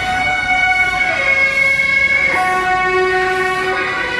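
Suona horns of a beiguan band playing long held notes, the melody stepping to a new note every second or so.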